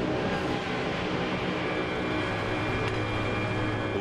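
Steady machinery drone with a rushing noise: an automated container stacking crane running as it lifts a steel shipping container.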